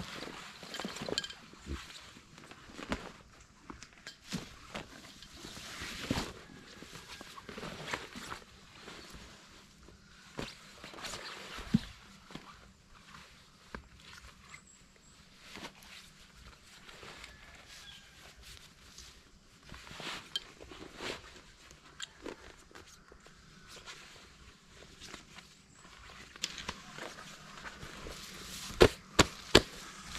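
Chest waders with rubber boots being pulled on and adjusted: irregular rustling of the thick wader material and shuffling, with scattered clicks and a few sharp clicks near the end.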